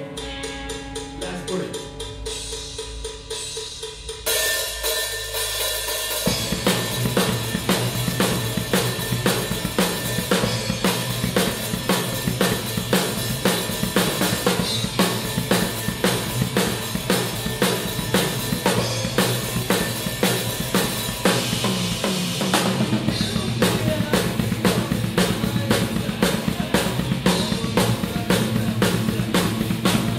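Rock band rehearsal without bass guitar, heard close to the drum kit: a guitar plays alone at first, cymbals come in about four seconds in, and from about six seconds the full kit of kick drum, snare and hi-hat drives a steady beat under the guitar.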